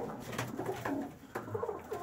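White Vienna pigeons cooing in a loft, the males calling as they squabble over space, with a couple of short taps in between.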